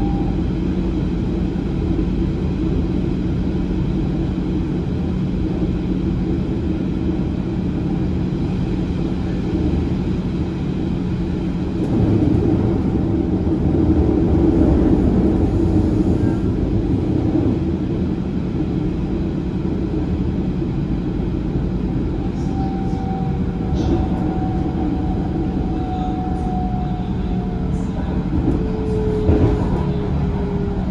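Steady running noise of a rail passenger car heard from inside as it travels along the track, with a low hum under it. The noise swells for a few seconds around the middle, and a faint whine slowly falls in pitch over the last several seconds.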